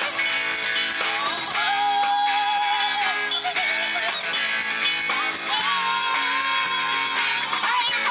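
Live classic-rock band playing: electric guitar, bass, drum kit and keyboard with a singer, two long held notes standing out over the band, one about one and a half seconds in and one about five and a half seconds in.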